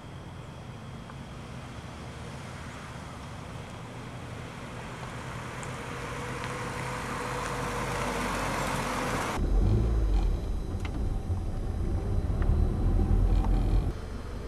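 Honda Civic coupe driving toward the camera, its engine and tyre noise swelling steadily for about nine seconds. Then a sudden cut to a louder, uneven low rumble heard inside a car's cabin.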